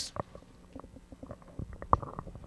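Faint handling noise on handheld microphones: scattered soft knocks and rustles, with a sharper bump near the end.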